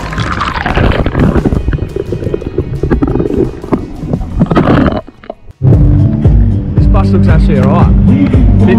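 A camera plunged into an ice bath: muffled churning of water and ice for about five seconds. After a brief drop to near quiet, loud music with a heavy bass beat comes in.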